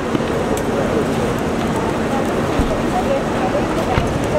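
Several people talking at once, none clearly, over steady road traffic noise.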